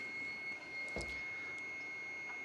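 DEC VAX 4000 Model 200 minicomputer running just after power-on: a steady rush of cooling fans with a steady high whine over it, and a single short knock about a second in.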